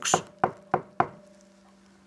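Four quick knocks on a hard surface in the first second, about three a second, sounding out a knock at a door.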